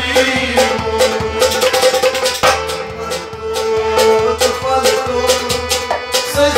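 Harmonium holding sustained chords, with a hand drum beating a quick, steady rhythm and men's voices singing at times.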